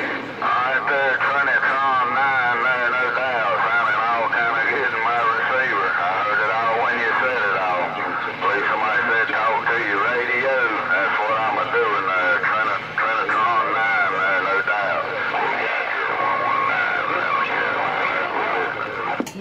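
Distorted, unintelligible voices of other stations received through a Galaxy CB radio's speaker on channel 28. The speech warbles and wavers over a steady hiss and a low hum from the radio.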